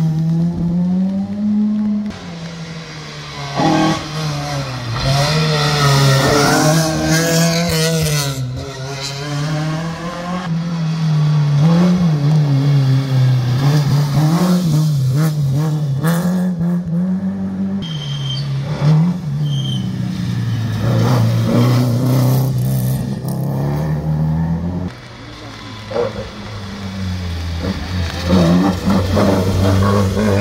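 Historic rally cars passing one after another, their engines revving hard with the pitch rising and falling through gear changes. The loudest part near the end is a red Volkswagen Golf Mk1 going past close by.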